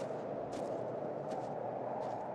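Blizzard wind blowing steadily, with three faint crunching footsteps in deep snow.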